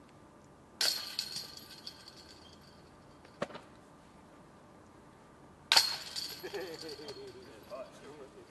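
Two disc golf putts striking the hanging chains of a metal disc golf basket, about a second in and again near six seconds: each a sudden metallic crash of jingling chains that fades over a second or two. A single light click falls between them.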